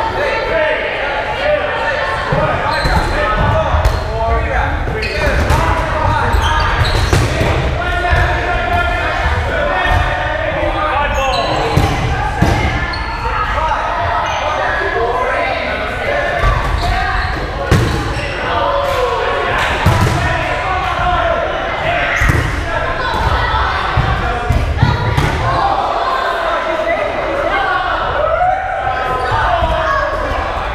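Dodgeballs bouncing and smacking on a hardwood gym floor and walls: many sharp, irregular impacts that echo in the large hall, over players' shouting voices.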